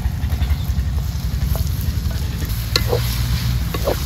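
Tomato pieces sizzling as they hit hot oil in a metal wok, with a wooden spatula stirring and scraping the pan; sharp knocks of the spatula on the wok come about halfway through and near the end. A steady low rumble runs underneath.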